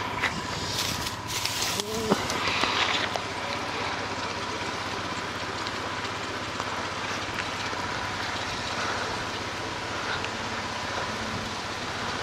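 Lure cast and retrieved with a spinning rod and reel: a short rush of hiss in the first couple of seconds, then steady, even outdoor noise while the line is wound in.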